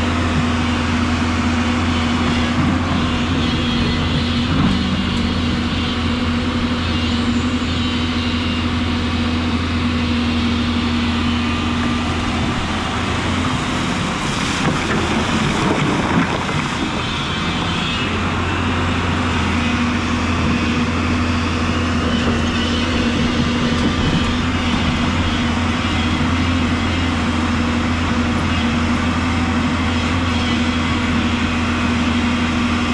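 Hyundai 210 crawler excavator's diesel engine running steadily over rushing river water. About halfway through, the even hum breaks for a few seconds and a rush of noise comes as the bucket digs and splashes into the stony riverbed.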